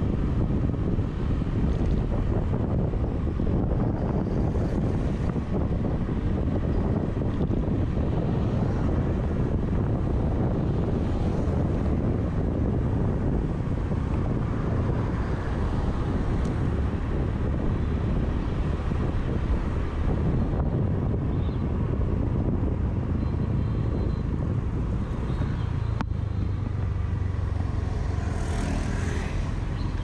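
Riding a Honda motor scooter in traffic: a steady low rush of wind on the microphone and the small engine and tyres running underneath. A brief hiss swells and fades near the end.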